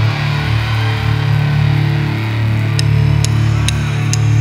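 Rock band playing live: electric guitar and bass guitar holding a heavy, steady riff, with cymbal strokes about twice a second coming in near the end.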